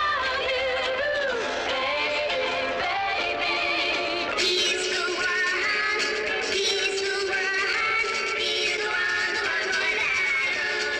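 A 1960s pop song: a lead vocal sings a melody over instrumental backing. About four and a half seconds in, the backing turns brighter and fuller.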